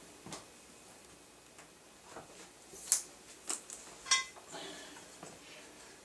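Faint handling sounds, scattered light clicks and rustles, five or so spread through, as a clear vinyl wiper strip is peeled out of a metal shower-door drip rail.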